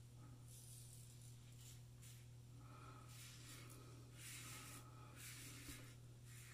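Faint short strokes of a razor scraping through lathered stubble, several in a row, over a low steady hum.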